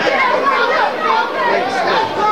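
Spectators at a boxing bout shouting and calling out over one another, a steady jumble of several voices with no single clear speaker.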